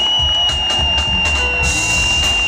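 Live funk band playing, with one high note held steady over a pulsing low rhythm.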